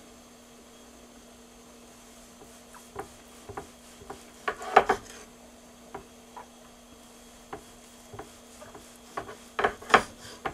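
Kitchen knife slicing through sesame-crusted seared tuna onto a cutting board: scattered short knocks and scraping strokes of the blade, loudest a little before five seconds in, with a cluster near the end. A faint steady hum runs underneath.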